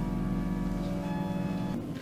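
Church organ holding sustained chords, dying away shortly before the end.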